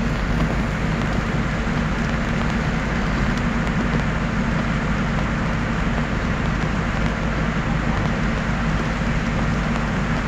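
Steady drone of a vehicle's engine and tyres on a slushy, snow-covered road, heard from inside the cab, with a constant hiss over a deep low rumble.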